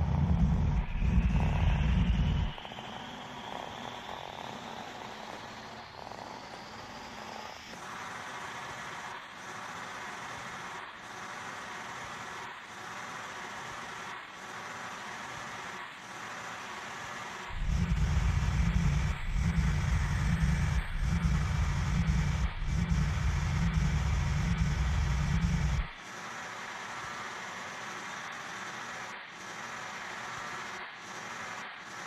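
Electronic music played live on hardware instruments. A heavy pulsing bass drops out about two and a half seconds in, leaving a thinner texture with a slowly rising sweep. The bass comes back in past the halfway point and cuts out again near the end.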